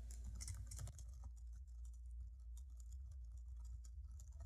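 Faint, rapid computer keyboard typing: many quick key clicks over a low steady hum.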